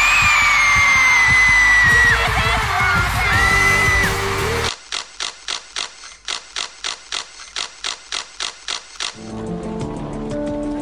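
Loud music with a high, slowly falling held note, cut off suddenly a little under halfway. Then a rapid run of camera shutter clicks, about four a second, for some four seconds, followed near the end by soft music.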